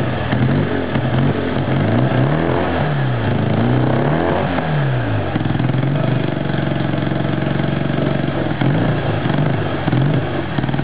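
Triumph 500 Daytona's parallel-twin engine, newly restored and on its first runs, revved in repeated throttle blips about once a second. About five and a half seconds in it settles to a steady idle, with one more short rev near the end.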